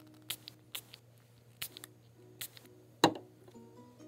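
Pump spray bottle of Marabu Art & Fashion Spray being pressed in five short hissing spurts, the loudest a little after three seconds with a click of the pump. Soft background music plays underneath.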